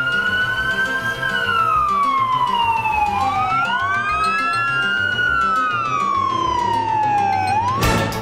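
Fire engine's wailing siren: slow rises and falls in pitch, with two siren wails overlapping and crossing each other. Background music with a steady beat runs underneath.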